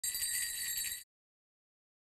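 A steady, high, bell-like electronic tone lasting about a second, cutting off abruptly, then dead silence.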